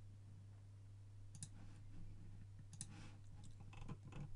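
Computer mouse clicks, two quick pairs about a second and a half apart, over a low steady electrical hum.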